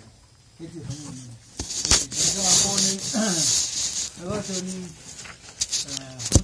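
A man speaking, with a loud hiss lasting about a second and a half starting just under two seconds in, and a sharp knock at about the same moment.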